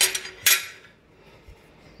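Cast aluminium engine parts clanking against a steel table top as they are handled: a sharp clank at the start and a louder one about half a second in, each with a short metallic ring.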